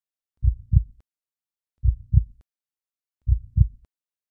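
Heartbeat sound effect: low double thumps (lub-dub), three beats about one and a half seconds apart.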